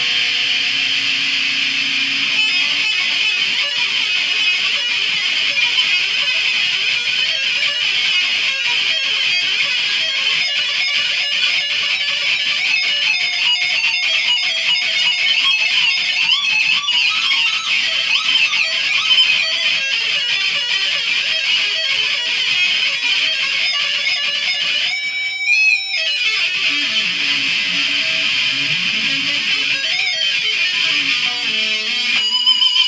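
Ibanez electric guitar played through a Marshall amp, running continuous arpeggio lines. About twenty-five seconds in, a short falling swoop in pitch cuts through before the arpeggios resume.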